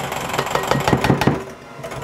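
Electric hand mixer running in a glass mixing bowl of cheesecake batter, with a cluster of knocks about a second in and a short quieter dip near the end.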